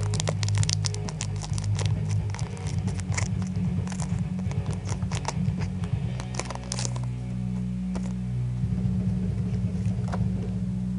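A foil Pokémon booster pack crinkling and tearing in quick, irregular crackles as it is opened, over steady background music carried mostly in the low bass.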